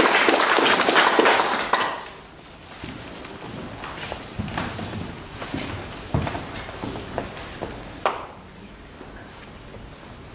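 Audience applause that dies away about two seconds in, followed by a quiet hall with scattered soft footsteps and light knocks as dancers move into place on a wooden stage.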